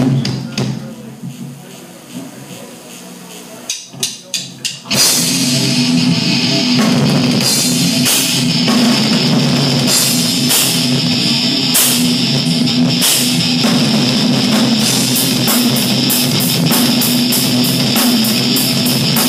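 Live heavy metal band starting a song. After a quieter, fading few seconds come four short hits, then the full band comes in about five seconds in: distorted electric guitar, bass and a drum kit with cymbals, playing loud and steady.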